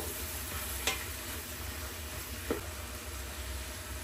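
Sliced pork, onions and carrots sizzling steadily in oil in a stainless steel pot as they are stirred, with a couple of brief light knocks.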